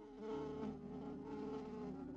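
Cartoon sound effect of a housefly buzzing: a steady, slightly wavering drone that starts about a quarter second in.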